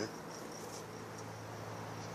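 Crickets chirping steadily at night, a continuous high-pitched trill, over a low steady hum.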